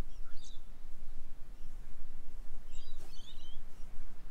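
Wind rumbling on the microphone, with short high bird chirps about half a second in and again around three seconds in.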